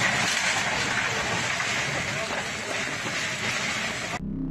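Heavy rain pouring down steadily, an even hiss close to the phone's microphone under an umbrella held overhead.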